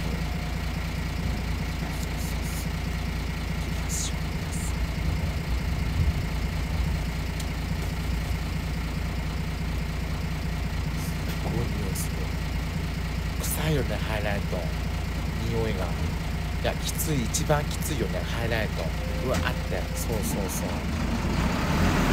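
Truck engine idling steadily, a continuous low hum that does not change. The truck is a blue box-bodied garbage truck, and it gives off the strong smell remarked on just before.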